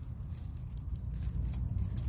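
Low, uneven rumble of wind buffeting the microphone, with faint soft crackles of dry leaf litter as fingers move among the plants.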